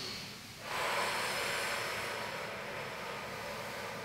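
A woman's long, audible breath out, a steady hiss starting just under a second in and slowly fading over about three seconds, taken with the effort of a side-lying leg lift.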